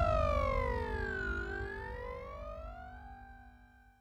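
Synthesizer sweep ending an electronic music logo sting: one tone glides down in pitch, then back up, fading out to silence shortly before the end.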